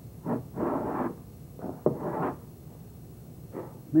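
Hand plane shaving wood off the edge of a sticking wooden door: a few rasping strokes, two of them longer, about half a second each.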